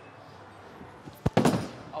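A bowling ball hitting the wooden lane at release: one sharp thud a little over a second in, echoing in the bowling alley, followed straight away by a short, louder burst of noise. A shout of "Oh" starts right at the end.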